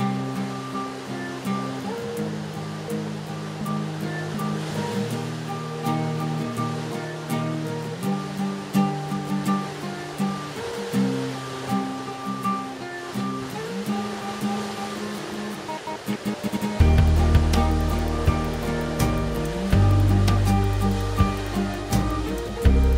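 Background music of held, pitched notes changing in steps, with a strong bass line coming in about seventeen seconds in.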